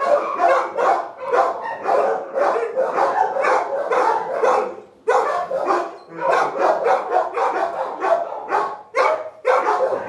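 Dogs barking in a chain-link kennel, a fast run of barks about three a second with a short break about five seconds in.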